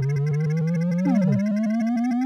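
Synthesizer sound effect of a system powering up: a buzzy tone climbing steadily in pitch, with a short falling sweep crossing it a little past halfway.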